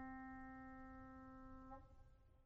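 A single piano note dying away, faint, until it stops shortly before the end.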